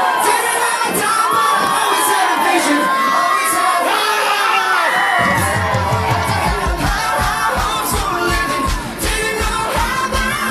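Audience cheering and screaming over dance-routine music; about five seconds in, a pulsing bass beat kicks in.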